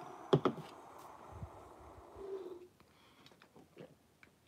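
A man breathing out long and heavy after downing a vodka shot, with two quick clicks about a third of a second in and a short low hum near the end of the breath.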